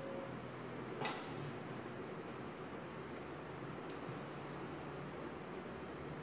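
Quiet room tone with a faint steady low hum, broken about a second in by one light clink of kitchenware being handled.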